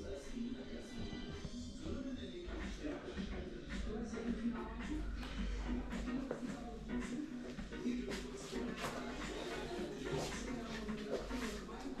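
Background music with a steady beat and a voice in it.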